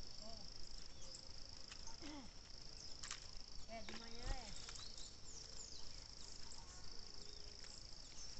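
Insects in the field trilling: a steady, high-pitched drone that runs in stretches of a second or two with short breaks, with a few faint short calls and a couple of brief clicks among it.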